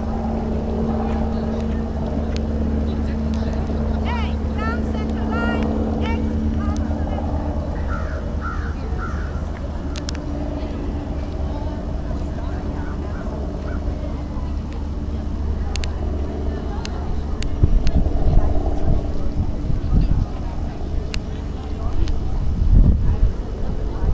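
A steady, low mechanical drone like a motor running, with a few short chirping calls about four to six seconds in and gusts of wind on the microphone near the end.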